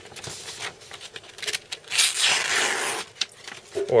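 A sharp serrated knife slicing through a sheet of paper: one zipping, scraping stroke about a second long, two seconds in, amid light paper rustling and clicks.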